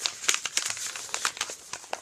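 A sheet of paper rustling and crinkling as it is handled close to the microphone, in a quick, irregular run of crackles.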